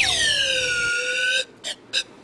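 A drinking straw blown like a reed horn: one buzzy tone that slides down in pitch and levels off, held about a second and a half before it cuts off, followed by a couple of brief short sounds.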